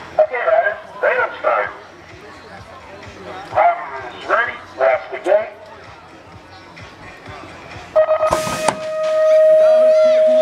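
BMX start-gate sequence: a recorded voice calls the riders in two phrases, then about eight seconds in the electronic start tones sound, ending in a long held beep, while the gate drops with a loud clatter.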